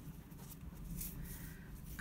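Faint scratchy rustle of cotton yarn being drawn through crochet stitches with a darning needle, over a low room hum.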